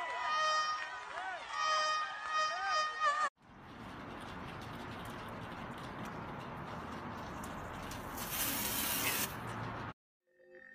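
A woman's raised, wavering voice over sustained musical notes, cut off abruptly about three seconds in. Then a steady outdoor background noise, with a brief high hiss near the end.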